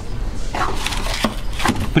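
Cardboard boxes and parts being handled and shifted on a wooden workbench: rustling and rubbing, with a couple of light knocks in the second half.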